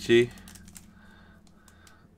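A short spoken word at the very start, then faint scattered crinkles and ticks of foil trading-card pack wrappers being handled and shuffled.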